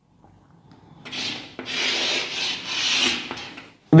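Blackboard duster rubbing chalk off a chalkboard in a few back-and-forth strokes, starting about a second in and stopping just before the next words.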